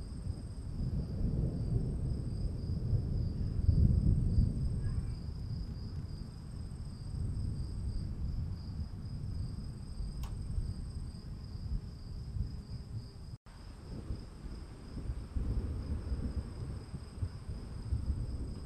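Steady high-pitched insect trill over a low rumbling background noise, with a faint click about ten seconds in and a brief cut-out of all sound about thirteen seconds in.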